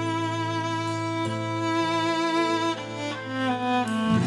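Background score of bowed strings, violin and cello, playing slow held notes.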